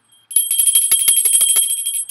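Small metal hand bell shaken rapidly, ringing at about ten strikes a second, starting about a third of a second in.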